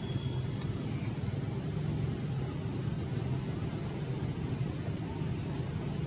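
A steady low background hum, even in level throughout, with a few faint high-pitched chirps near the start.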